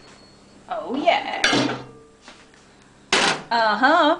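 A glass bowl being lifted out of a microwave and set down on a stove top: a sharp knock about halfway through, then a short clatter as it is put down, amid talk.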